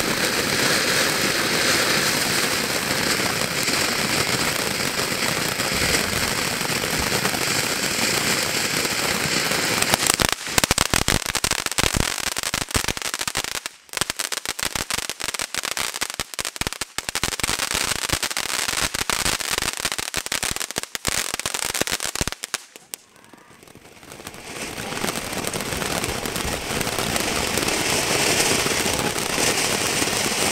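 Ground fountain fireworks spraying sparks: a steady loud hiss, then dense crackling from about ten seconds in. Near the two-thirds mark it drops briefly almost to quiet, then a fountain's hiss builds up again.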